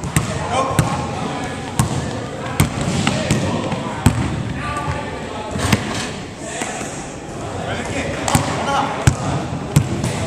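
Basketballs bouncing on a hardwood gym floor: irregular sharp thuds, roughly one a second, echoing in the hall, with voices talking in the background.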